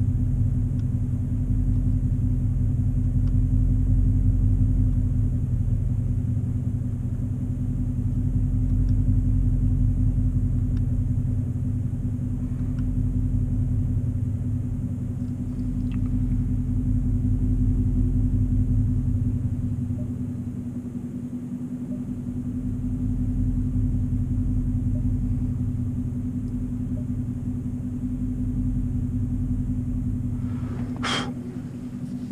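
Car engine idling, heard from inside the cabin: a steady low rumble that swells and eases slowly in loudness.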